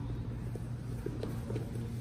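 Faint rustling and a few light knocks of two grapplers' bodies shifting and scraping on a foam mat as one wriggles out from under side control, over a steady low hum.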